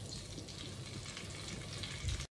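Sambar onions (small shallots) sizzling in hot oil with mustard seeds and curry leaves as they are stirred in the pot: a steady crackling hiss.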